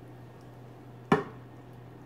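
A single sharp knock about a second in as cheese sauce is poured from a nonstick pot: the pot knocking against the ceramic baking dish. A steady low hum runs underneath.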